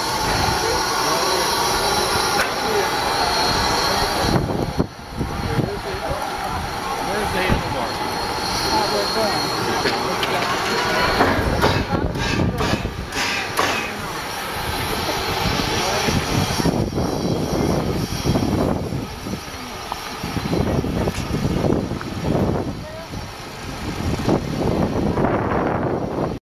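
A standing narrow-gauge steam locomotive, Durango & Silverton No. 473, hissing steam, mixed with the chatter of a crowd around it.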